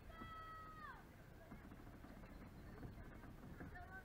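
A faint, high-pitched young voice gives one drawn-out yell, held steady for about a second and then falling in pitch. A shorter call follows near the end.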